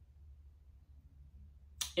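Near silence: room tone with a low hum. A brief sharp sound comes near the end, just before speech resumes.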